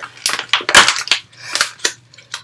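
Dog dental kit's packaging being torn open and crumpled by hand: a run of irregular crackles and ripping sounds, loudest just before the one-second mark.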